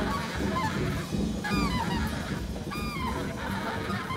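Saxophone played in free-jazz style: short, bending high cries that rise and fall in pitch, twice, over the band's drums and bass.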